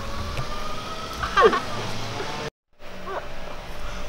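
Steady low outdoor rumble with a brief vocal exclamation about a second and a half in. The sound drops to dead silence for a moment just past halfway at an edit cut, then the rumble resumes.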